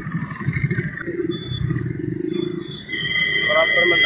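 A man's voice talking indistinctly, joined about three seconds in by a steady high-pitched tone that holds to the end.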